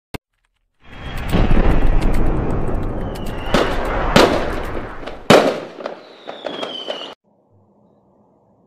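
Fireworks sound effect: a dense crackle of firecrackers with three loud bangs in the middle and a whistle gliding down near the end, cutting off suddenly about seven seconds in.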